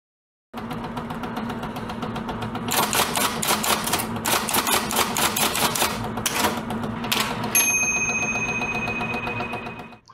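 Typewriter keys clattering rapidly over a steady low hum, growing louder a few seconds in, then a single ringing bell ding, like a typewriter's carriage-return bell, that rings on to the end.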